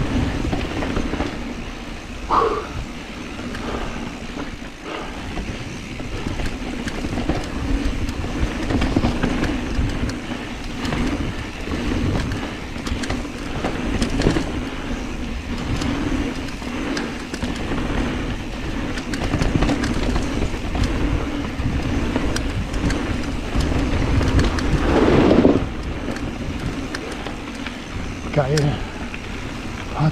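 Specialized Status mountain bike riding down a dirt singletrack. There is a steady rolling noise from the tyres on dirt and gravel, with the bike's chain and parts rattling over bumps, and wind buffeting the camera microphone. A louder jolt comes about two seconds in and another near the end.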